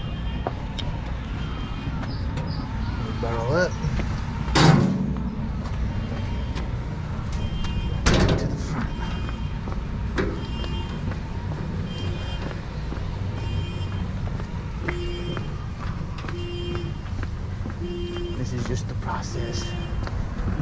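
Steel wheelbarrow being pushed over concrete: a steady low rumble from its rolling tyre, with two sharp knocks, about five and eight seconds in. A faint high chirping repeats about once a second in the background.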